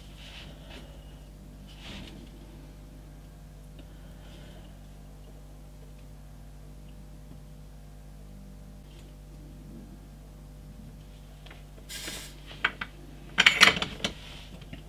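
Soldering at a workbench: a steady low electrical hum under faint handling sounds, then a few loud metallic clatters near the end as the soldering iron is taken away and set down.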